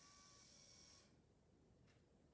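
Near silence: room tone, with a faint soft hiss during the first second.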